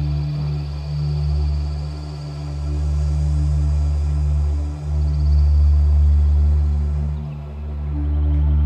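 Ensoniq TS-10 synthesizer playing slow, sustained chords with a deep bass. The chord dips and swells in again about five seconds in and once more near the end.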